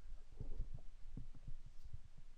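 Computer keyboard keys being pressed, heard as a run of irregular, dull low thumps.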